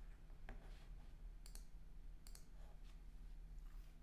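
Near silence: faint room tone with a steady low hum, broken by a few faint clicks, two of them coming as quick double clicks about a second and a half and just over two seconds in.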